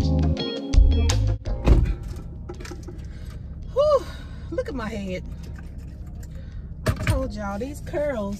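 Guitar background music that stops about a second and a half in, then a single thump. After that, a low steady hum with a few brief vocal sounds from a woman.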